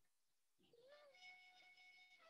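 Near silence, with a faint pitched sound: a short rise-and-fall glide about a second in, then a faint held tone.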